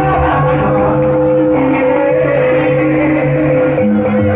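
Loud gamelan music of the kind that accompanies a jaranan trance dance: one note held steady above a line of lower notes that step from pitch to pitch.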